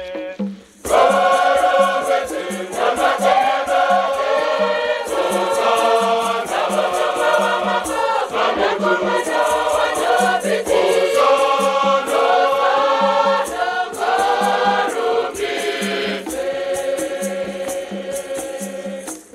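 Large choir singing a Shona Catholic hymn, with rattles shaken on the beat. The singing breaks off briefly just after the start, then comes back in full.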